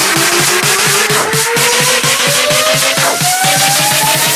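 Electronic dance track in a build-up: a synth tone sweeps steadily upward in pitch over fast, evenly repeating hits, with the deep bass dropped out.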